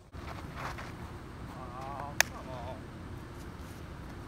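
Outdoor background: a steady low rumble with faint, distant talking around the middle, and one sharp click just past halfway.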